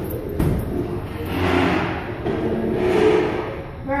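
A rumbling, rushing swish of someone sliding down an enclosed plastic tube slide, swelling and fading twice after a thud at the start.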